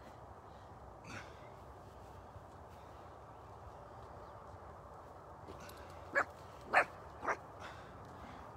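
A dog barking three times in quick succession, about half a second apart, near the end, with a single fainter bark about a second in.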